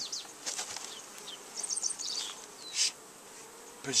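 Honey bees buzzing over an open brood box, a faint steady hum. A brief rustle comes near the middle, and a few short high chirps come a little under two seconds in.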